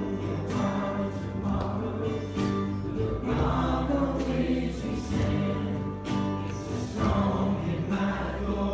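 A youth group singing a worship song together in unison, with instrumental accompaniment and a light beat about once a second.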